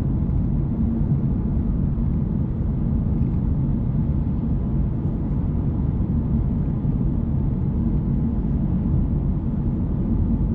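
Steady low rumble of a Mercedes-Benz car driving at an even speed, tyre and engine noise heard from inside the cabin.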